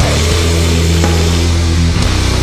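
Sludge metal music: heavily distorted electric guitar and bass holding low, sustained chords, changing to a new chord near the end.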